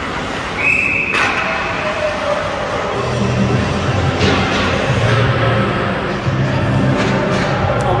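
A referee's whistle blows once, a short shrill steady note about half a second in, cut off by a knock. After that, music plays with a few scattered knocks and thumps.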